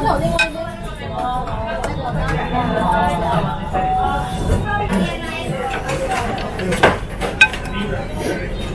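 Indistinct background voices in a restaurant, with two sharp clinks of tableware near the end, chopsticks against a ramen bowl.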